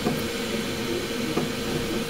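A preheated 3D printer's cooling fans running with a steady whir and a faint constant hum.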